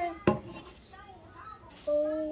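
A spatula knocking once sharply against a pot, about a third of a second in, then faint sounds of mixing.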